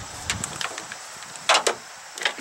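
Handling noise from a plastic-cased battery charger being picked up and turned in the hand: a few light clicks and knocks, then two sharper knocks in quick succession about one and a half seconds in.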